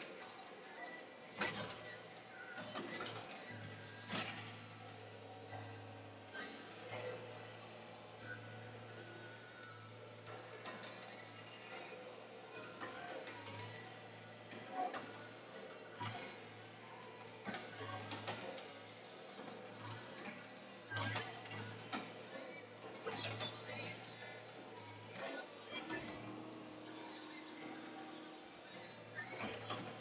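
Log loader heard faintly from inside its cab: a steady low engine hum with scattered knocks and clanks as the grapple handles pine logs onto the trailer.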